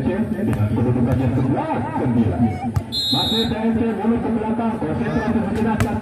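Crowd chatter and talk throughout. About halfway through comes a short referee's whistle blast signalling the serve, and near the end a single sharp slap as the volleyball is served.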